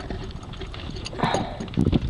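Handling noise: faint rubbing and clicks, then a cluster of dull knocks near the end, with a brief murmur about a second in.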